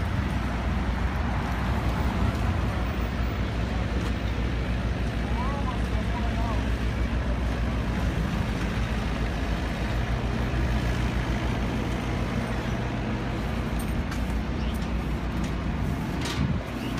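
Steady low rumble of an idling engine and street traffic, with faint voices in the background.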